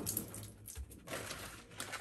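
Tap water running onto a kitchen sponge and splashing into a ceramic basin.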